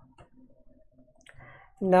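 A few soft computer keyboard keystrokes, unevenly spaced, as code is typed and run.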